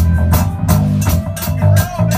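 Live rock band playing in the room: a drum kit keeping a quick, steady beat under electric guitar and bass guitar.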